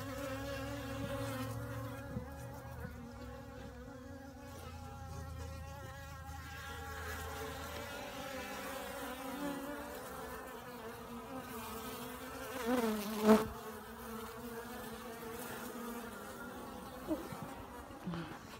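Honeybees buzzing in a steady drone around a sugar-syrup jar feeder on the hive. About two-thirds of the way in there is a brief louder stretch of wavering pitch, ending in a sharp click.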